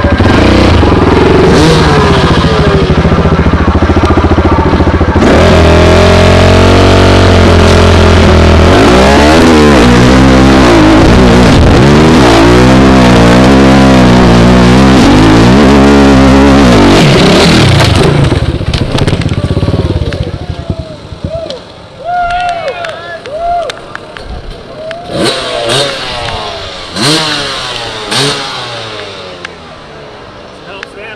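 Dirt bike engine running flat out up a steep hillclimb, loud enough to overload the microphone. From about nine seconds in the revs surge up and down again and again as the rear wheel spins in mud. About eighteen seconds in the engine drops off, leaving quieter short blips of the throttle and voices.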